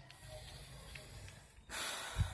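Quiet room tone, then a short breathy hiss near the end.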